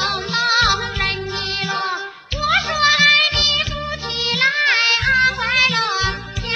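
Chinese-language pop song from a music video, a high, young-sounding voice singing a gliding melody over bass notes that start and stop in short blocks. The hosts call the beat something that "slaps".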